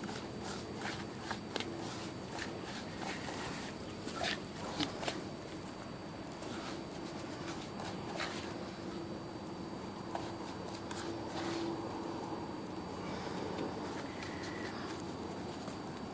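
A hand mixing and crumbling moistened cuscuz corn flour in a small pot: faint, scattered rustles and soft clicks.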